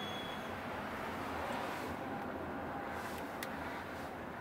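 Steady road and tyre noise heard inside the cabin of a battery-electric Jaguar I-PACE driving along a city street, with a couple of faint ticks near the end.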